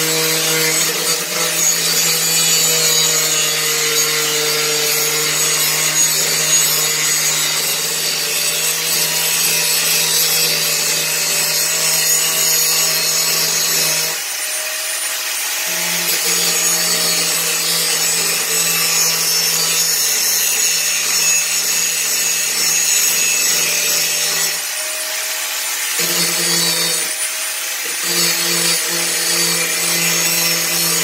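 Handheld angle grinder running and grinding the steel of a machete blade to clean up its surface. The motor's hum cuts out briefly about halfway through and again near the end, then picks up again.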